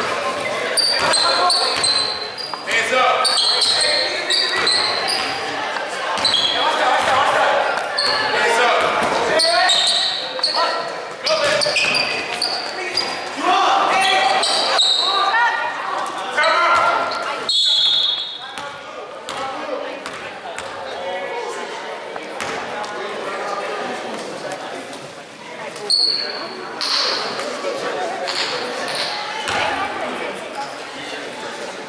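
Basketball being dribbled and sneakers squeaking on a hardwood gym floor, with shouting voices echoing in a large gym. About two-thirds of the way in, a short whistle stops play, and it goes quieter after that.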